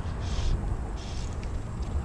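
Wind buffeting the microphone as an uneven low rumble, with a couple of faint, brief hisses.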